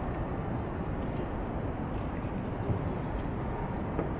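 Steady outdoor city background noise: a low, even rumble of distant urban traffic, with a faint high-pitched warble for a moment about three seconds in.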